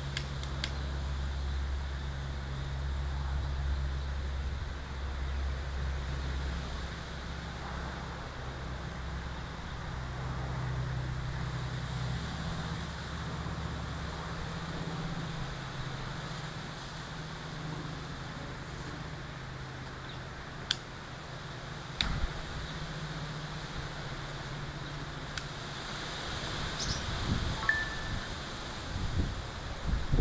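A steady low machine hum, like a fan or air-conditioning unit running, that drops away about halfway through, followed by a few sharp clicks.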